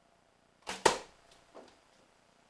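A shot from a 48-pound Black Widow PLX longbow: the short sound of the string's release, then a fraction of a second later a louder, sharp crack of the arrow striking, followed by a fainter knock about three-quarters of a second after that.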